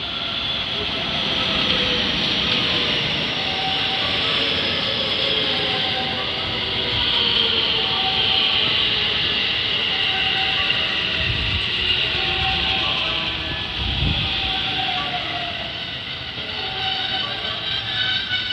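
JR West 223 series 2000-subseries electric train arriving at a station and braking to a stop, with wheel-on-rail noise and a motor whine falling in pitch as it slows. Two low thumps come about 11 and 14 seconds in.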